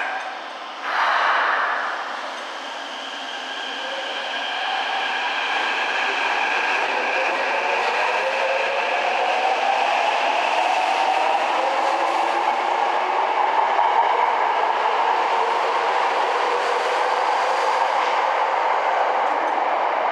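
Tokyo Metro 03 series subway train pulling out of an underground station platform. A short hiss comes about a second in, then the electric motor whine rises in pitch as the train accelerates past, over steady wheel and rail noise.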